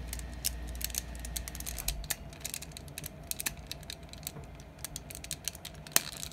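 Small plastic transforming robot figures being handled and pegged together: a run of small, irregular plastic clicks as the parts are pushed into place.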